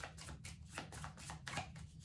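Tarot cards being shuffled by hand: a quick, irregular run of soft card clicks and slaps, several a second.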